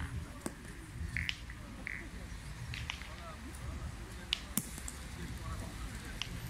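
Steel pétanque boules striking gravel and knocking against one another: a handful of sharp clacks, the loudest two close together about four and a half seconds in, over a steady low rumble.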